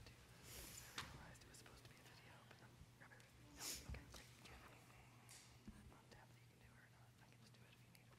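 Near silence: room tone with a steady low hum, a few brief faint whispers and a light click about a second in.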